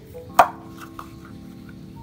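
A single sharp plastic clack, followed by a lighter tick about half a second later, as the plastic cover of a water pump's capacitor box is handled and brought back onto the pump.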